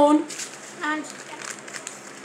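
Faint crinkling of a dessert-kit packet being handled, with a short bit of a child's voice about a second in.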